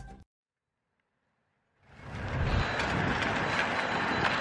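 Background music cuts off at the start, leaving about a second and a half of silence. A steady rushing outdoor noise then comes in, with a thin high tone near the end.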